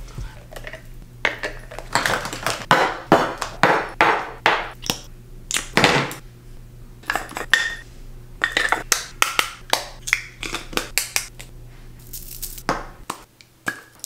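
Many short clicks and clinks of small hard objects being handled and set down at a bathroom sink, over a steady low hum.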